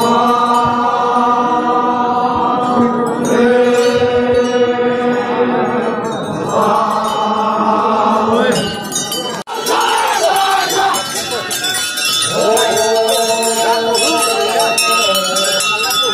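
A group of Konyak Naga men chanting together, holding long notes of two to three seconds in unison. The chant breaks off sharply about nine seconds in, and another held chant follows.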